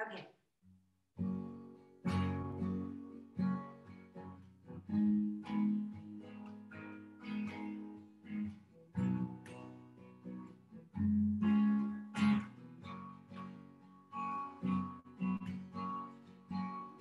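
Acoustic guitar playing the opening chords of a song, starting about a second in, a few chords to the bar.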